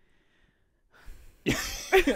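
A pause of near silence, then about one and a half seconds in a sudden loud, breathy burst of laughter.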